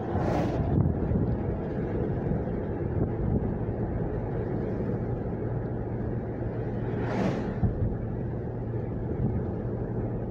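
Steady road and engine rumble inside a moving car's cabin, with two brief whooshes, one at the start and one about seven seconds in.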